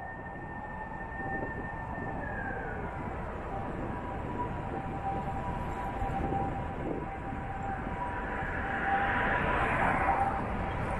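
Street traffic heard from a moving bicycle: a low, even road rumble with a steady thin whine, swelling louder near the end as a vehicle comes closer.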